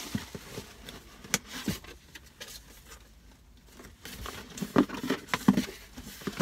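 Hands rummaging in a cardboard shipping box: scattered rustles, scrapes and small taps of packaging and items being handled, with a quieter stretch in the middle.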